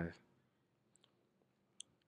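Near silence, broken by a few faint short clicks about one second in and again just before two seconds; the tail of a voice is heard at the very start.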